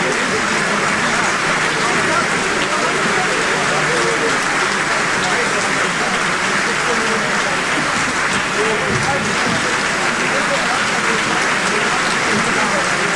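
Theatre audience applauding steadily, with voices mixed in among the clapping.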